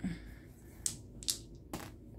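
Two short scratchy strokes of a felt-tip marker crossing out a square on a paper game sheet, then a brief knock as dice land on the sheet near the end.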